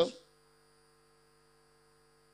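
Faint steady electrical hum from the event's sound system during a pause, after the end of a man's spoken word right at the start.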